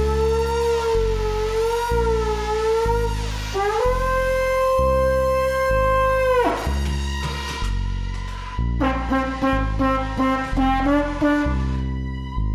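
Trombone played through effects pedals: a long, wavering high note steps up and is held, then drops away sharply in a slide. A quicker phrase of short, lower notes follows. Underneath runs a pulsing bass line that changes note in even steps about twice a second.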